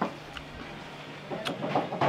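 Chewing a mouthful of stink beans and chilies, with soft crunching and mouth clicks that pick up about a second in.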